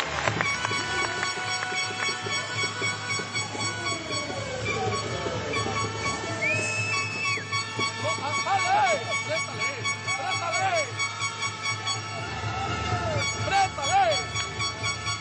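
Basketball arena sound: crowd noise with music and held horn-like tones. A single high whistle-like tone lasts about a second, roughly six and a half seconds in.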